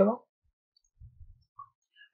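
A few faint, short clicks about a second in, from a computer mouse being operated.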